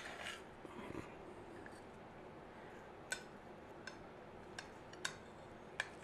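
Fork and knife working through a stuffed baked potato, tapping against a ceramic plate: faint, with a few sharp clicks, most of them in the second half.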